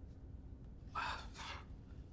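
A person gasps once, a short breathy intake about a second in, over a faint steady hum.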